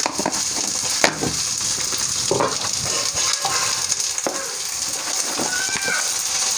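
Green peas and spices frying in hot oil in a kadhai, a steady high sizzle, with a few sharp clicks, the loudest about a second in.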